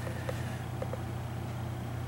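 A steady low hum with a few faint, soft ticks as a leather knife sheath is handled.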